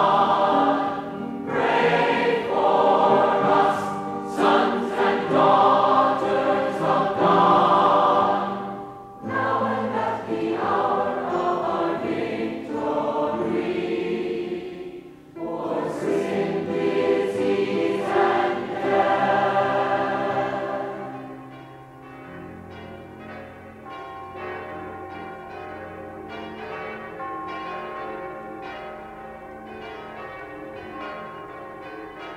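A congregation singing together in loud phrases with brief pauses between them. About two-thirds of the way through the singing stops, and quieter steady sustained tones carry on.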